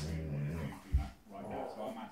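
Two dogs play-fighting: a low dog growl at the start, then a single thump about a second in, over a television news voice.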